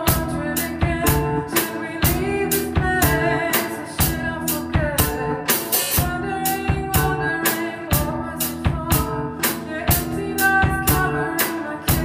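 Live band playing an instrumental passage: electric guitar through an amplifier holding and bending notes over a drum kit keeping a steady beat on snare and bass drum.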